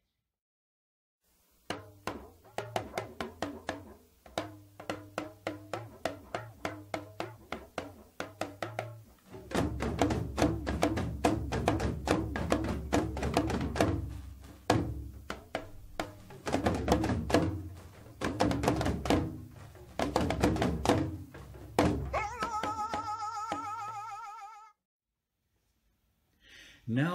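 Dagbamba drumming: a solo lunga hourglass talking drum plays rapid strokes in free rhythm, its pitch shaped by the player squeezing the cords. About nine seconds in, the gungong drums and a second lunga answer in a polymetric pattern, louder and with deep booming strokes. Near the end a singer's voice enters, held on a wavering pitch, and then it stops suddenly.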